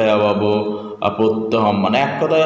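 A man's voice reciting Sanskrit words in a drawn-out, chant-like way: two long phrases with a short break about a second in.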